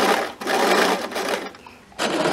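Electric sewing machine stitching a hem through a wide hemmer presser foot, running in short spurts: a brief stop just under half a second in, then running again until it stops near the end.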